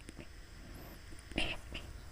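A pause in the speech: faint breathy or whispered sounds from the speaker, twice in quick succession about one and a half seconds in, over low steady room hiss.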